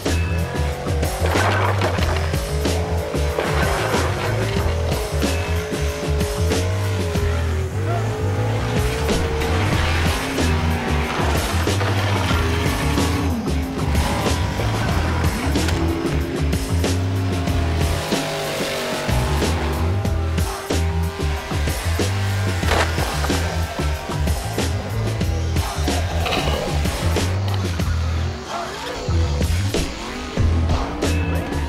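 Background music with a heavy, steady bass beat.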